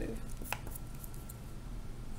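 A pen writing a plus sign on paper lying on a tabletop, with one sharp tap about half a second in.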